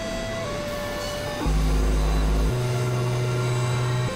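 Electronic synthesizer drone music: sustained steady tones that change pitch abruptly. A loud, deep bass note sounds about one and a half seconds in and holds for a second before giving way to a higher held tone.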